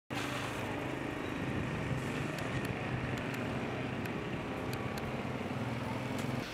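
Steady low background rumble and hiss of ambient noise, with a few faint light clicks in the middle.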